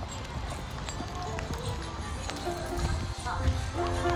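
Low rumble and scattered clicks from a phone microphone carried while walking, then a lo-fi Christmas beat of background music comes in about three and a half seconds in and grows louder.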